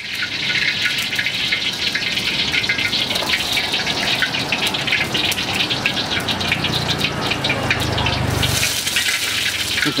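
A wok heating on a high-powered gas burner: a steady loud hiss with constant crackling as the hot oil spits. A low rumble swells briefly near the end.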